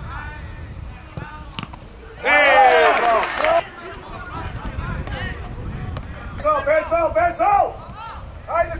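Men's voices shouting and cheering as a penalty goal goes in: a loud burst of several voices about two seconds in, lasting over a second, then a quick string of short shouts near the end.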